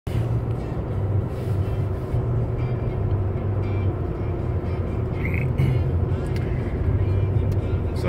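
Steady low rumble inside a moving vehicle's cabin: engine and tyre noise while driving on a snow-covered highway.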